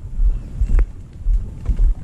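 Low, uneven rumbling and scraping of a plastic kayak being dragged along an asphalt path, in pulses with the walker's steps, with one sharp click about a second in.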